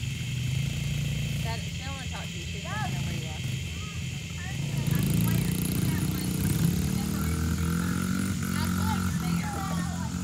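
Small dirt bikes and a youth ATV idling and running, their engines growing louder from about five seconds in, with faint short voice-like calls over them.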